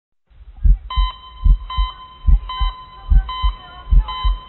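Heartbeat sound effect opening a hip-hop track: a low double thump repeating about every 0.8 seconds, with a high electronic tone sounding alongside each beat.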